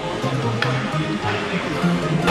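Background music with a bass line that moves from note to note.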